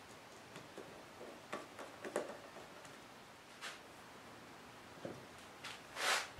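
A handful of faint, scattered clicks and small taps as a screwdriver drives small screws through the knife's handle scales and the metal and scale parts are pressed together.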